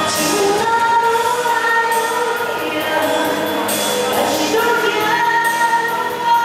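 A woman singing a song into a handheld microphone over instrumental accompaniment, with long held notes.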